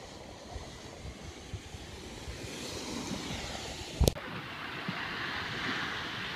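Gulf surf washing onto a sandy beach with wind buffeting the phone's microphone. A single sharp click comes about four seconds in, after which the surf hiss is brighter and a little louder.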